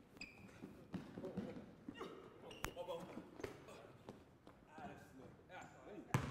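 Faint sounds of basketball play in a large gym: a ball bouncing on the hardwood court and scattered footfalls, with a sharp knock about two and a half seconds in, under faint distant voices.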